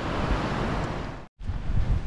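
Ocean surf washing on a beach, with wind rumbling on the microphone. About a second in it cuts off abruptly, and a lower wind rumble follows.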